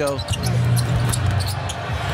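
Arena sound of a live basketball game: steady crowd background with a ball being dribbled on the hardwood court.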